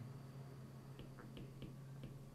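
Faint light clicks of a stylus tapping and stroking on a tablet as handwritten digits are put down, a handful of them about a second in, over a low steady hum.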